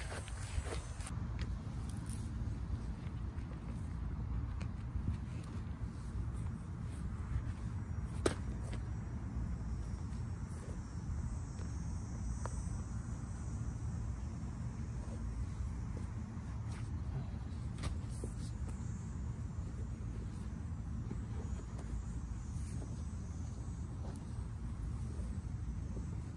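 Outdoor ambience: a steady low rumble with a few faint clicks.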